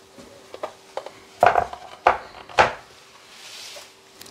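A glass baking dish on a wooden serving board being set down on a table: three loud knocks of wood and glass, with a few lighter clicks before them, then a short soft sliding rub as the board is pushed into place.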